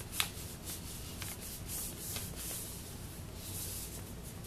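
Folded paper airplane rustling and rubbing under the fingers as its creases are pressed and handled, with a few faint crisp ticks of the paper.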